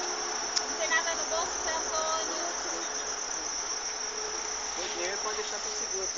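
A steady, high-pitched chorus of insects chirring in the grass, with faint distant voices in the first couple of seconds.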